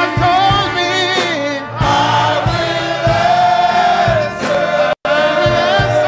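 Men's choir singing a gospel song over a steady low accompaniment, with the sound cutting out for an instant about five seconds in.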